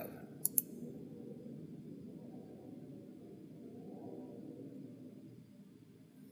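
Two quick computer mouse clicks about half a second in, then a faint, steady low background hum.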